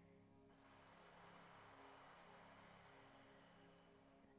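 A woman's long hissing 's' exhale through clenched teeth, starting about half a second in and lasting about three seconds, easing off slightly near the end: a slow, controlled breath release.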